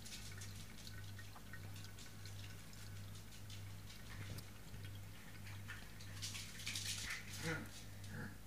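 Faint scattered drips and ticks of water over a steady low hum, with a short crackly stretch a little after the middle.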